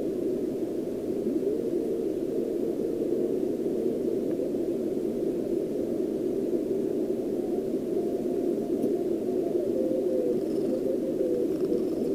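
Receiver hiss from a homebrew SST 20-metre QRP CW transceiver being tuned across a quiet band. The steady band noise is squeezed into the narrow low audio passband of the CW filter and comes through an external amplifier and speaker. A faint steady tone of a weak signal comes and goes twice, once near the start and once near the end.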